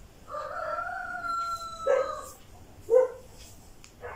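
An animal's long call of about two seconds on a nearly steady pitch, dipping slightly at the end, followed by two short, loud calls about a second apart.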